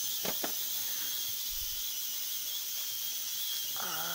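Digital ultrasonic cleaner running mid-cycle, giving a steady high hiss, with two faint clicks in the first half-second.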